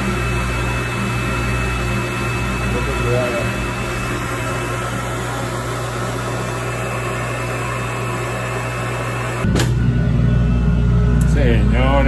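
Liquid-nitrogen cryotherapy chamber running during a session: a steady hum with hiss. About nine and a half seconds in, the hiss cuts off suddenly and a louder low rumble takes over.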